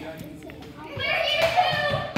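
Children's excited, high-pitched wordless shouting, starting about a second in.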